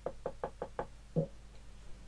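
Rapid knocking: five quick, even knocks, about five a second, then one heavier knock a little over a second in.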